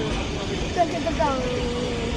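Steady outdoor background noise with faint distant voices, one voice holding a drawn-out tone near the end.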